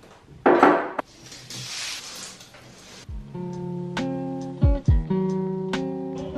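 A short rush of noise and a soft hiss, then, about three seconds in, a background music track of strummed acoustic guitar with a few low beats begins.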